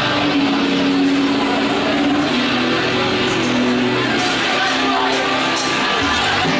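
Live rock band playing a song's instrumental opening on electric guitars, bass guitar and drums, with a few cymbal strikes in the last two seconds.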